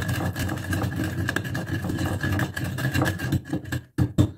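Wooden pestle grinding broken slate-pencil pieces in a mortar: a steady crunching, scraping grind as the sticks are crushed to powder, breaking into a few separate pounding strikes near the end.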